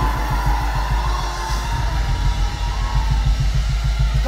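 Live praise-band music with a steady, fast beat.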